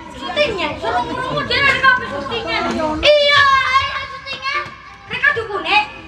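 Children's voices talking through stage microphones and a PA system, a comic back-and-forth dialogue between boys.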